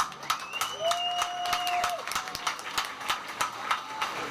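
Scattered applause from a rally crowd, irregular individual claps rather than a dense roar. About a quarter-second in, a steady high tone starts, is held for about a second and a half, and then stops.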